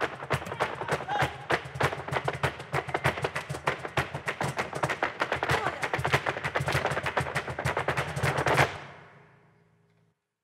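Flamenco zapateado: dancers' shoes stamping on the stage floor in fast, dense volleys over a low sustained musical tone. It stops suddenly near the end and the echo dies away.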